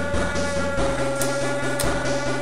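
Background music with a steady beat over a held tone; the bass note changes about a second in.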